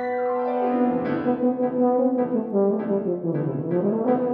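Tuba and grand piano playing a classical duet: the tuba holds sustained notes while the piano strikes repeated chords. Near the end the tuba line dips down in pitch and climbs back up.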